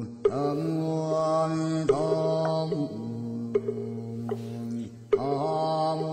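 Background music of a low chanted mantra in long held notes, each phrase opening with a short upward glide, and a sharp knock marking the start of a phrase about every one and a half seconds.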